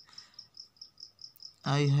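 A cricket chirping steadily in the background: a high-pitched pulse about five times a second.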